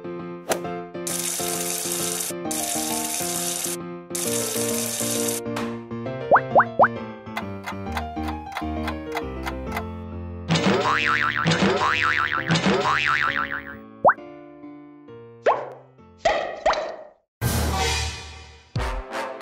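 Cheerful children's cartoon music with sound effects over it: two stretches of hiss about a second in, three quick rising blips about six seconds in, then a run of rising chirps from about ten seconds.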